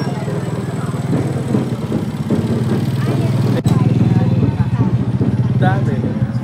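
Small motorcycle engine running at low speed close by, with people talking around it; the sound breaks off a little past halfway and comes back louder.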